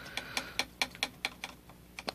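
A rapid, slightly uneven run of light, sharp clicks or taps, about six or seven a second.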